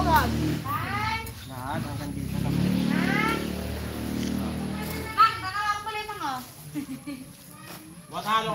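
Voices calling out in short, drawn-out phrases over a low steady rumble that fades about five seconds in.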